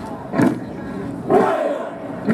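A group of marines shouting a haka-style war chant in unison: loud barked syllables about once a second, two of them here, the second drawn out longer.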